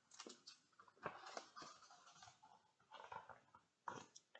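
Faint rustling and soft taps of a picture book's paper pages being turned by hand, in a few short spells.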